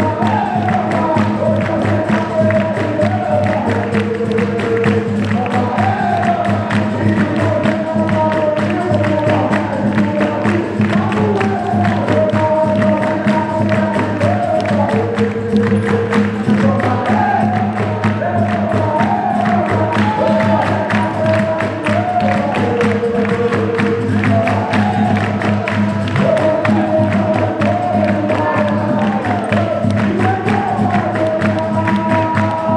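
Capoeira roda music: a group singing to the instruments of the roda, with the surrounding circle clapping steadily in time.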